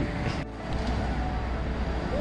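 Hot air balloon's propane burner firing, a steady roar with a deep rumble and a brief break about half a second in.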